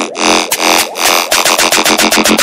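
Dubstep build-up: a pulsing synth chord roll that speeds up steadily through the second half, with the deep bass held back.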